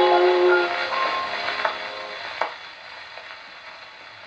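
Shellac 78 rpm jazz record playing on an HMV 102 portable wind-up gramophone: the closing held notes of the ballad stop within the first second and die away. What is left is the record's surface hiss, with a few sharp clicks and crackles as the record comes to its end.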